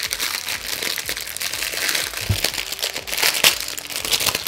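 Clear plastic packaging crinkling and rustling in the hands as a small wrapped item is unwrapped: a continuous run of irregular crackles.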